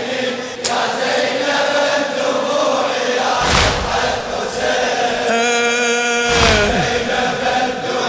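Large crowd of men chanting a Shia latmiya (mourning chant) in unison, with a loud collective chest-beat (latm) about three and a half seconds in and again about three seconds later. Just before the second beat a single voice holds a long note, then slides down.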